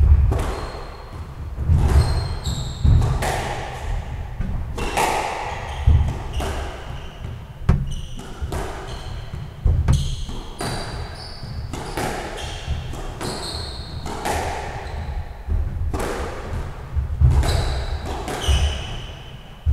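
Squash rally: the ball cracks off rackets and walls every second or two, each hit echoing in the enclosed court. Between the hits come heavy footfalls and short high squeaks of court shoes on the wooden floor.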